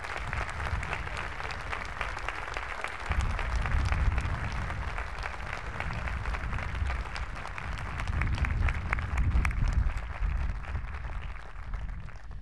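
Large audience applauding steadily, with a low rumble underneath.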